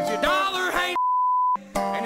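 A man singing a country song, accompanying himself on a resonator guitar. About a second in, the music drops out for a steady, high censor beep of about half a second that masks a swear word, then the singing and guitar resume.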